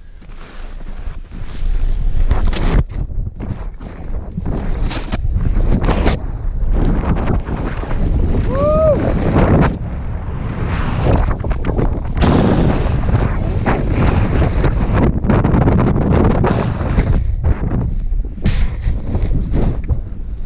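Loud wind buffeting the action camera's microphone while a snowboard slides and carves through deep powder snow, a continuous rush broken by short scrapes.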